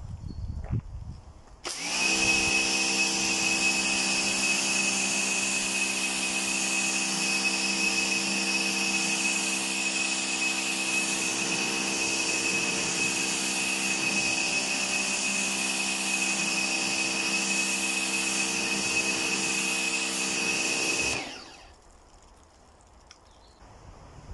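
Pressure washer running while its jet rinses snow foam off a car bonnet: a steady motor hum with a high whine and a hiss of spraying water. It starts abruptly about two seconds in and cuts off a few seconds before the end.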